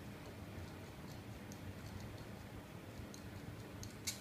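Faint small metal ticks and clicks at uneven intervals, about eight in all, from the copper Fat Snow Wolf 26650 mod clone's locking part as it is turned in the hands. A steady low hum lies underneath.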